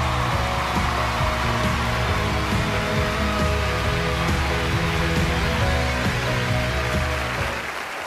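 Walk-on music playing over audience applause; the music fades out near the end.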